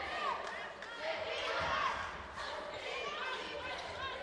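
Court sound of a basketball game in play: a basketball bouncing on the hardwood floor, with short squeaks of shoes and players' voices calling out.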